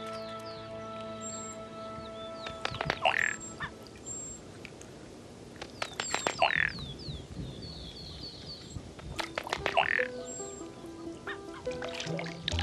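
A male ruddy duck displaying on the water: three short bursts of clicks and splashing, a little over three seconds apart, over background music with long held notes.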